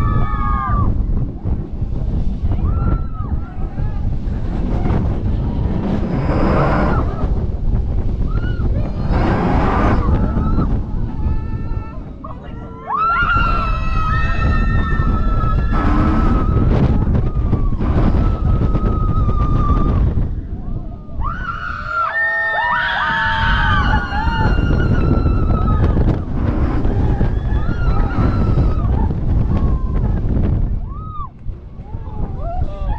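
Roller coaster train running at speed, wind rushing over the microphone, with riders screaming and whooping on and off; one scream is held long about halfway in, and several voices scream together a little later.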